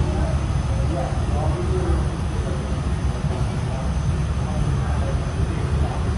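Steady low roar of a glassblowing hot shop's burners and blowers, running without change, with faint voices under it.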